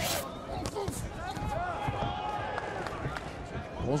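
Ringside sound of a kickboxing bout: shouting voices from the crowd and corners over a steady arena murmur, with a sharp thud right at the start and a few softer thuds from the fighters in the ring.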